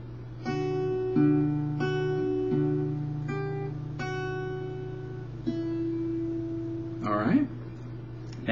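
Acoustic guitar fingerpicked slowly in a D-chord pattern: a held bass note under about seven plucked notes and pairs on the higher strings, each left to ring. A short spoken remark comes near the end.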